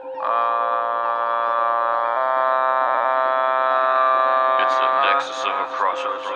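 A steady electronic chord of several held notes, shifting to a new chord about two seconds in and cutting off near the end, followed by a voice.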